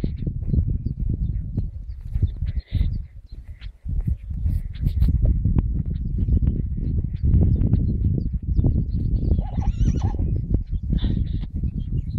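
A horse whinnying, a wavering call about ten seconds in, over a constant low rumble.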